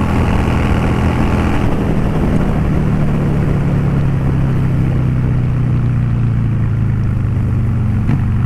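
Honda Shadow 600's V-twin engine running steadily while the motorcycle is ridden down the road, heard with wind and road noise at the rider's microphone. The wind noise eases a little under two seconds in, while the engine's hum holds steady.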